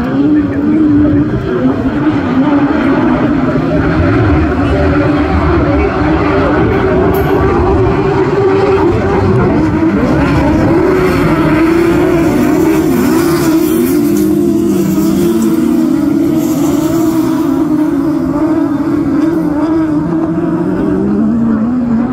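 Several autograss special racing buggies lapping a dirt oval, their engines revving hard. The overlapping engine notes rise and fall in pitch without a break as the cars accelerate, lift and pass.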